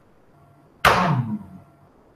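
Raised arms dropped all at once, the hands slapping against the sides of the body: one sharp slap a little under a second in, with a short falling tone, dying away within half a second.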